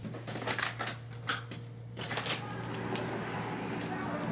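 A quick run of sharp clicks and rattles, the loudest about a second in, then from about two seconds in a steady rise in outdoor background noise, as if something was opened to the outside.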